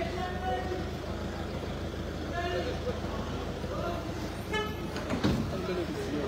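An ambulance van's engine idles close by with a steady low hum, with people's voices around it.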